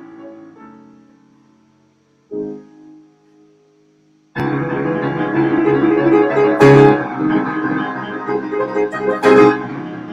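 Solo piano: soft notes die away almost to silence, then a single quiet chord rings out about two seconds in. After a short pause, a loud, dense passage breaks in, with two especially forceful chords, one in the middle and one near the end.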